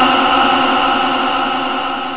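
A man's voice holding one long sung note through a microphone, steady in pitch and slowly fading away, at the end of a chanted line.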